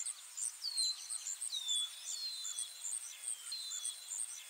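Outdoor bird ambience: short whistled bird calls that slide down in pitch, roughly one a second, over a quicker, higher chirping that repeats steadily.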